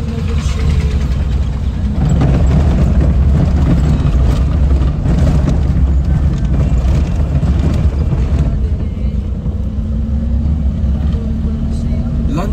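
Car cabin noise while driving: a steady low rumble of engine and road, a little louder through the middle of the stretch.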